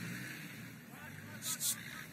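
Low steady engine rumble with faint voices in the background, and two short hissing bursts about one and a half seconds in.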